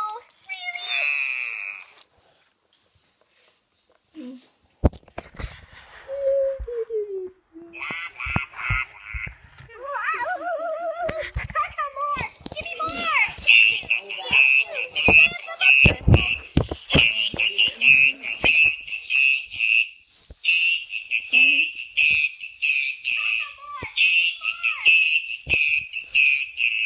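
Electronic Furby toy singing in its high synthetic voice: warbling, wobbling phrases at first, then from about halfway a fast, repeating high-pitched sing-song tune that pauses briefly and resumes. Sharp knocks of handling noise come and go throughout.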